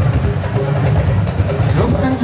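Dance music with a heavy, steady bass, with voices over it.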